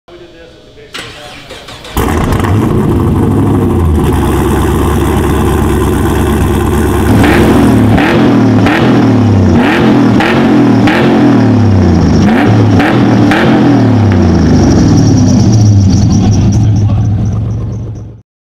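A V8 engine starts about two seconds in and runs loud. From about seven seconds it is revved in a quick repeated series of blips, rising and falling in pitch roughly twice a second, before fading out near the end.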